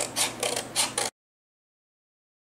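Scissors snipping through cardstock in a quick run of short cuts, about five a second. The sound stops dead about a second in and gives way to total silence.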